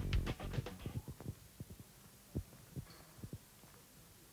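Footsteps on a wooden stage floor: a run of dull, low thuds at a walking pace, with the tail of background music fading out in the first second.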